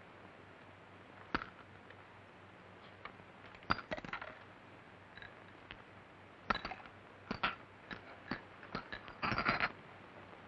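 Sparse small clicks, knocks and rustles of objects being handled and people moving in a room, with a longer rustling cluster near the end, over the faint steady hiss and hum of an old film soundtrack.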